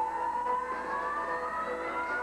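A female gospel singer holds one long note that slides steadily upward in pitch, over sustained backing chords.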